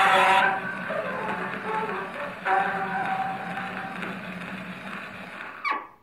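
Columbia BC Graphophone playing a pink Lambert celluloid cylinder record: the closing notes of the recording come from the horn over surface hiss. They fade away and end near the close in a quick falling sweep, after which the sound cuts off.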